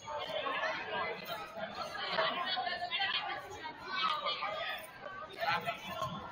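Indistinct chatter of several people talking at once in a gymnasium, louder from the start.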